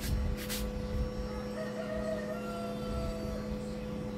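A rooster crowing faintly in the background, one drawn-out call through the middle, over a steady low electrical hum.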